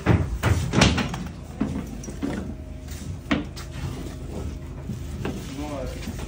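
Metal drywall T-square knocking against a drywall sheet as it is set against the sheet's edge. There are a few sharp knocks in the first second and one more about three seconds in.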